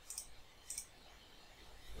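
Two faint computer mouse clicks, about half a second apart.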